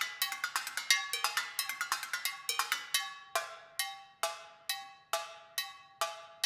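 Solo metal percussion: drumsticks striking tin cans, a cowbell and other metal objects. The strikes come fast and dense at first, then from about halfway through they come singly, roughly two a second, each left to ring with a bright, pitched metallic tone.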